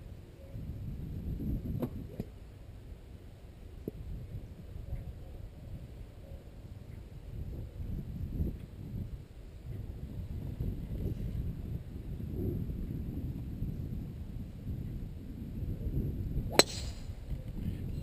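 A golf club strikes a ball off the tee with a single sharp crack about a second and a half before the end, over a low, uneven rumble.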